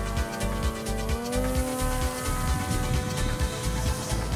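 Background electronic music with a steady beat, over the buzz of a flying wing's electric pusher motor and propeller (a 3536 1800 kV motor swinging a 10x5 prop), the buzz rising in pitch about a second in.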